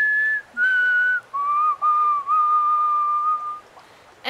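A person whistling an imitation of a white-throated sparrow's song: clear, pure notes, a high one, a slightly lower one, then a lower note drawn out for about two seconds with two brief breaks.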